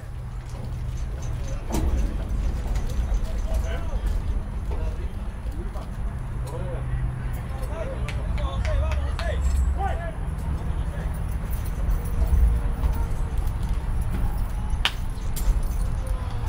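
Outdoor baseball field ambience: a steady low rumble with faint distant voices and the odd sharp click. Near the end comes a single sharp crack of the bat meeting the first pitch.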